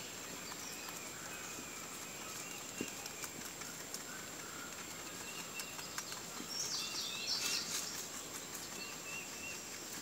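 Rabbits munching fresh greens, with small scattered clicks of chewing and tearing leaves. Outdoor ambience with birds chirping runs underneath, and a quick run of bird calls about seven seconds in is the loudest sound.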